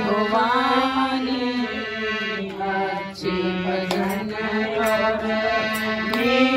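An elderly man singing a Hindi devotional bhajan into a microphone in long, sliding held phrases, over a harmonium's sustained notes, with a few hand claps in the second half.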